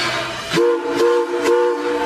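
A train whistle sounding a chord in three quick blasts, starting about half a second in, over music with a steady beat.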